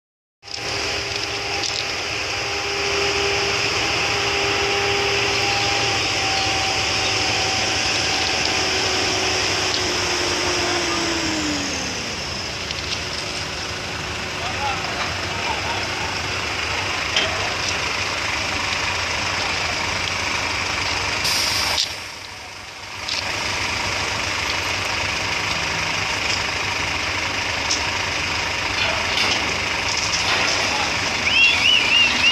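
TEREX mobile crane's diesel engine running steadily under load with a whine that glides down in pitch about ten to twelve seconds in. The sound dips briefly about two-thirds of the way through.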